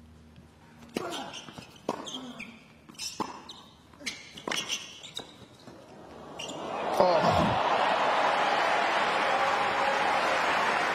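Tennis rally on a hard court: the ball is struck by rackets roughly once a second with sharp pops. From about six and a half seconds in, the crowd cheers loudly after the point is won, and this is the loudest part.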